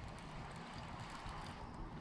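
Faint, irregular low rumble of wind on the microphone, with no distinct clicks or knocks.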